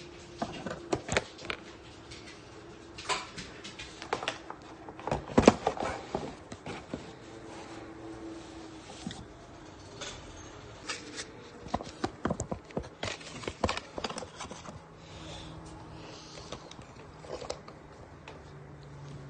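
Irregular knocks, clicks and clatters of kitchen things being handled at a countertop, some single and some in quick runs, the loudest about five seconds in and again near the two-thirds mark.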